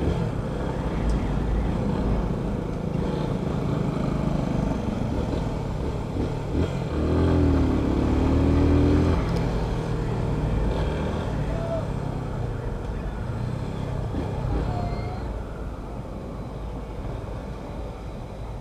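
Yamaha FZ-25's single-cylinder engine running as the bike rides through town at low speed, under steady wind and road rumble on the camera mounted on the bike. The engine note swells and wavers for about two seconds midway through.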